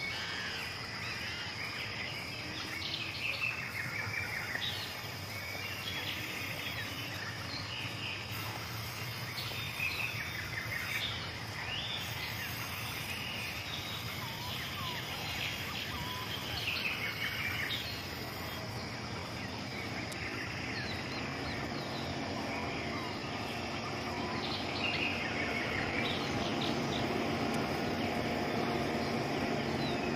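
Rural countryside ambience: many birds chirping and calling over a steady high insect drone. In the last ten seconds a low steady hum swells in underneath.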